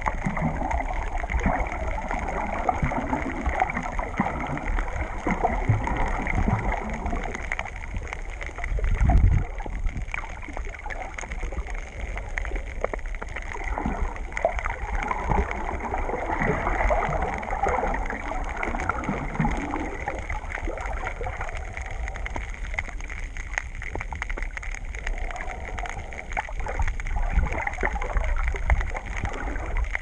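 Underwater sound picked up by a submerged camera: a steady, muffled wash of moving water with gurgling and a deep rumble, and one louder surge about nine seconds in.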